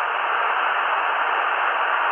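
Steady band-noise hiss from a Tecsun PL-330 shortwave receiver tuned to 2749 kHz upper sideband, heard while the voice on the marine weather broadcast pauses. The hiss has no treble: it stops sharply above about 3 kHz.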